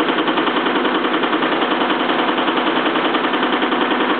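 Home-built Bedini (Watson) machine running: alternators and an electric test motor spinning together, a loud, steady whir with a fast, even pulsing. The alternator is under the load of the test motor fed through the transfer switch, running at about 635 rpm.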